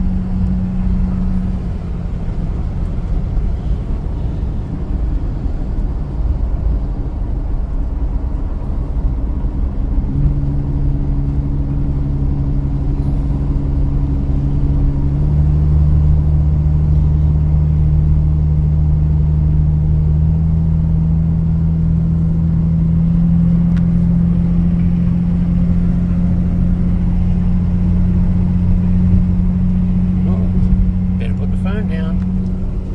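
Chrysler CM Valiant with its replacement engine, driving along, heard from inside the cabin: a steady engine drone under road noise. The engine note changes about ten seconds in and again about five seconds later, then climbs slowly.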